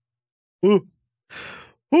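A man's short voiced sound, then a breathy sigh about a second and a half in.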